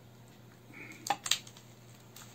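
Two sharp clicks about a fifth of a second apart, roughly a second in, from a kitchen knife against a cutting board while a hard-boiled egg is sliced by hand. A faint short rub comes just before them.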